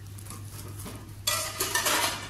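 Plastic wrapping on packaged bedding sets crinkling and rustling under a hand, louder about a second and a half in, over a steady low hum.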